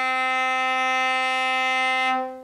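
Cello bowing a single sustained middle C, very steady and rich in overtones; near the end the bow leaves the string and the note rings away briefly.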